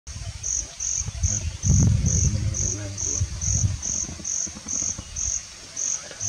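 An insect chirping steadily in the background, short high-pitched chirps about twice a second, over low, uneven rumbling and scraping noises that are loudest about two seconds in.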